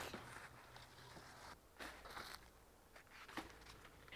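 Near silence with a few faint, brief rustles of squash leaves being cut and handled during pruning.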